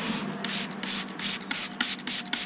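Cloth shop rag scrubbing a rubber washer clean in quick back-and-forth strokes, about five a second.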